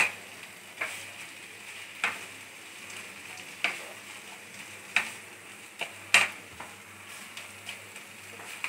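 A spatula stirring and scraping crumbled soya chunk mixture in a non-stick kadai, knocking against the pan about seven times at uneven intervals over a faint steady sizzle of frying.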